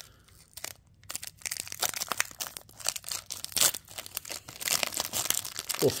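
Foil trading-card pack wrapper crinkling and tearing as it is worked open by hand: a pack that proves hard to open and is being torn apart. Quiet for about the first second, then a dense run of crackles that gets busier toward the end.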